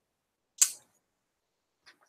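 A single brief, sharp click about half a second in; otherwise near silence.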